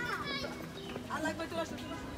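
Children's high-pitched voices calling out, once at the start and again about a second in.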